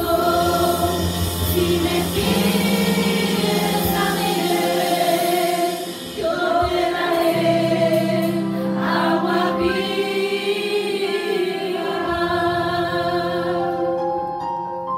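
A small group of women singing a Christian hymn together through microphones, sustained sung phrases over low held accompaniment notes.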